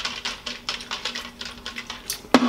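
Plastic shaker bottle being shaken by hand, its contents rattling in a rapid, irregular run of clicks.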